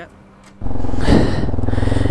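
Single-cylinder Hero XPulse 200 motorcycle engine running steadily. It comes in suddenly, loud, about half a second in.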